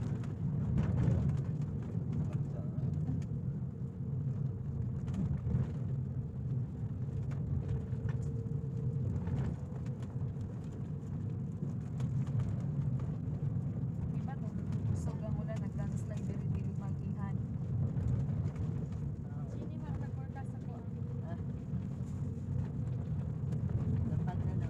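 Steady low rumble of a moving vehicle's engine and road noise, heard from inside the vehicle as it drives along.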